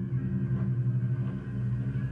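Live band playing a loud, sustained low drone on guitars, deep notes held steady over a rumbling low end.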